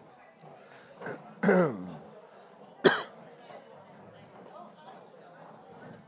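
A man clearing his throat with a falling, voiced sound about a second and a half in, then one sharp cough about a second later.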